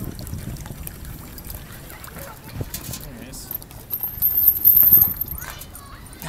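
Water from a park drinking fountain running into a stainless steel dog bowl. A thin, steady, high-pitched whistle lasts about a second and a half, starting a little after three and a half seconds in.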